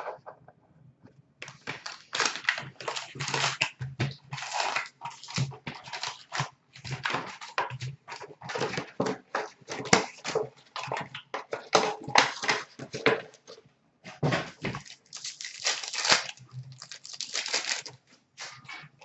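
Plastic wrapping and foil packs of 2015-16 Upper Deck hockey cards crinkling and tearing as the boxes are unwrapped and opened. It is a continuous run of irregular crackles, with a brief pause near the end.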